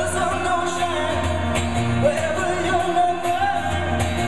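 A man singing long held notes while strumming an acoustic guitar, performed live and amplified through stage loudspeakers.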